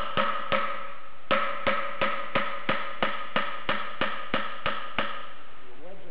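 A steel pry bar being jabbed and wedged under the bearing collar of a Bridgeport mill's front variable-speed pulley. It makes a run of sharp metal-on-metal strikes, about three a second, and the cast pulley rings after each one. There is a brief pause near the start, and the strikes stop about five seconds in.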